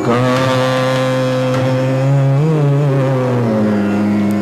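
A male Hindustani khayal vocalist holds one long sung note in Raga Multani over a steady tanpura drone. The note wavers in an ornament about halfway through and slides down near the end.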